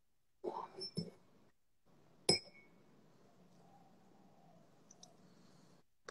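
A single sharp click with a short ringing tail about two seconds in, after a moment of faint speech, followed by a faint steady hum.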